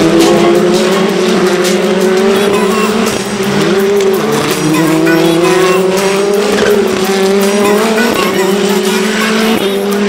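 Several open-wheel race cars accelerate out of a corner in a pack, their engines overlapping in a loud, rising whine. The pitch drops sharply at each upshift, about four times.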